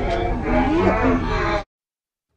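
A boy's loud, drawn-out vocalizing, held on one pitch and then sliding up and down, cut off abruptly about one and a half seconds in.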